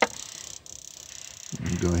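One sharp click of small metal fittings being handled at the gas valve's pressure tap, then a steady faint high-pitched background sound.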